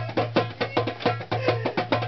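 Hand drum with a white skin head slapped and struck by hand in a quick, busy rhythm of about six sharp beats a second, with a low steady hum underneath.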